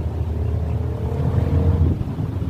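Motor vehicle engine nearby: a steady low rumble with a faint engine note rising slowly, as a vehicle accelerates.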